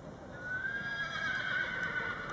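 A horse whinnying: one long high call that starts about a third of a second in and holds fairly level before fading near the end.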